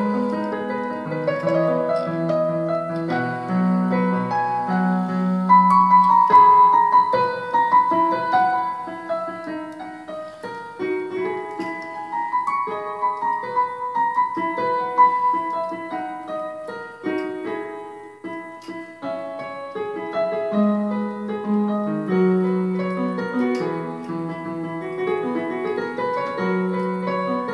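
Casio portable electronic keyboard played in its piano voice: a melody over held low bass notes. It grows softer about two-thirds of the way through, and the bass notes come back near the end.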